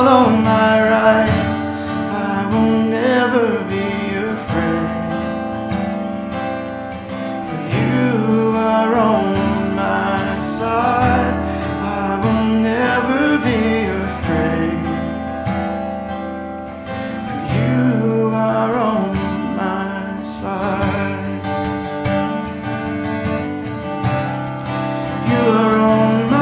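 A man singing a worship song while playing an acoustic guitar.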